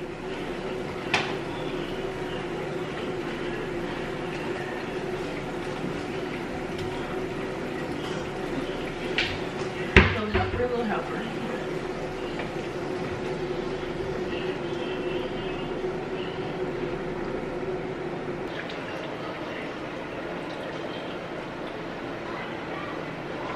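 Steady hiss and hum of food cooking on an electric stovetop. A few light clinks of cookware, and a sharp metal clank of a pot lid about ten seconds in.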